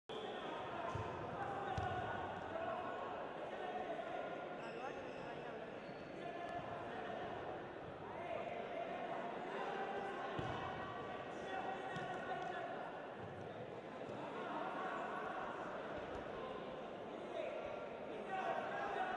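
Indistinct voices of coaches and spectators calling out, echoing in a large sports hall, with occasional dull thuds of wrestlers' bodies hitting the wrestling mat, one of them about ten seconds in.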